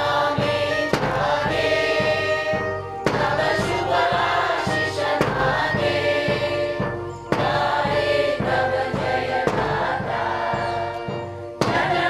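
Mixed choir of adults and children singing together to a steady bass-drum beat, each sung phrase opening with a strong attack about every four seconds.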